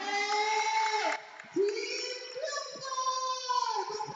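Children singing together in long held notes, with a short break about a second in.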